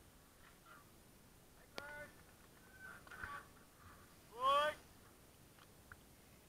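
Bystanders shouting beside the trail: a short call about two seconds in, some fainter voices, then one loud shout rising in pitch about four and a half seconds in.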